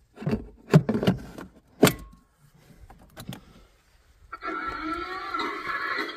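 A DeWalt battery pack being pushed into its adapter on a ride-on toy tractor: a few sharp plastic clicks and knocks over the first two seconds, followed by a brief faint beep. About four and a half seconds in, the toy tractor's built-in sound module cuts in with its electronic start-up sound through its small speaker, as the converted tractor powers up.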